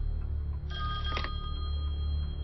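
A telephone ringing once, a short ring a little over half a second in, over a low steady drone.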